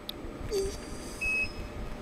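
Touchscreen control panel of a rebar bending machine giving one short, high electronic beep a little after a second in, as a field is tapped and the number keypad opens. A low, steady background hum runs underneath.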